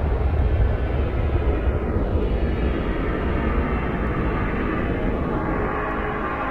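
Electronic dance music mix passage filled by a swept noise effect: a loud wash of filtered noise with a slow phasing sweep through it, over a deep steady bass rumble.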